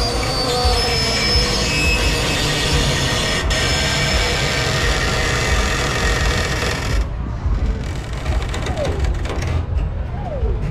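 A carousel in motion: a steady low rumble of the ride and wind buffeting the microphone, under carousel music that cuts off abruptly about seven seconds in while the rumble carries on.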